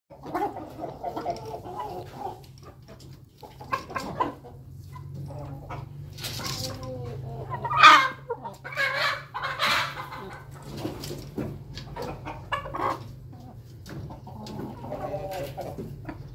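Chickens clucking and calling in a pen, a run of irregular calls with the loudest about eight seconds in. A steady low hum runs underneath.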